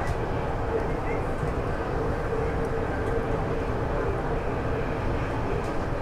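Steady running noise inside the cabin of a RapidX (Namo Bharat) regional rapid-transit train travelling at about 135–140 km/h, with a faint steady hum running through it.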